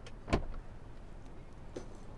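Car door latch clicking open about a third of a second in, with a fainter click as the door swings out near the end.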